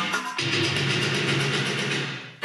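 Music playing from a vinyl record on a Fisher Studio Standard MT-6221 turntable with an Audio-Technica M35V cartridge. About half a second in, the music moves to a new, held chord.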